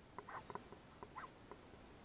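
A rat squeaking from its burrow, a quick irregular series of short, faint squeaks, while a terrier has its head down the hole.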